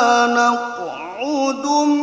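A male qari reciting the Qur'an in melodic tilawah style. A long held note is followed midway by a softer glide down in pitch and back up, and the voice then settles into another sustained note.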